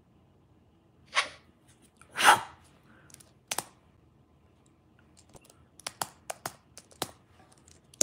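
Sharp key clicks of typing: a pair about three and a half seconds in, then a quick run of several near the end. Before them come two short swishes about one and two seconds in, the second the loudest sound here.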